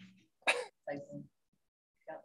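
A man clears his throat once, sharply, about half a second in, then makes a brief voiced sound over the video-call audio.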